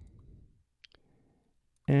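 A single faint, short click about a second in, in a quiet pause between narration.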